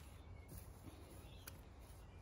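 Near silence: faint low background rumble, with one faint click about a second and a half in.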